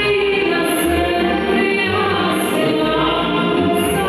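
A woman singing a song into a handheld microphone over a backing track with a steady bass beat, amplified through a PA system.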